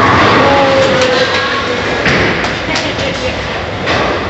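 Bowling alley din: bowling balls rolling down the lanes and pins clattering as they are struck, with a sharper crash of pins about two seconds in.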